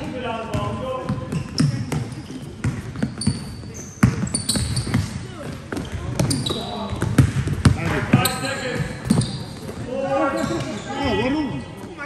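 Indoor basketball game: the ball bouncing on the court, sneakers squeaking on the hall floor, and players calling out, all with a hall's echo.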